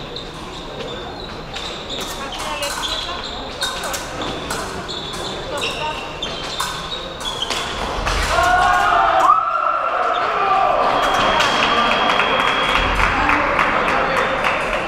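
Épée fencers' footwork on the piste: repeated sharp stamps and knocks of feet as they advance, retreat and lunge, over the murmur of voices in a large hall. About eight seconds in there is a short cry, and soon after, a steady electronic tone from the scoring machine as a touch is registered.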